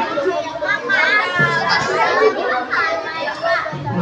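Many children's voices talking and calling out at once, overlapping chatter from a large group of children.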